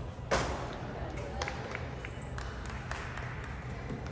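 Ambience of a large indoor sports arena: distant chatter over a low hum. A single sharp, echoing impact sounds a moment after the start, and a few faint clicks follow.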